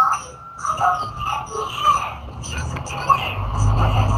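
Indistinct background voices, with a motor vehicle's low engine rumble coming in and building near the end.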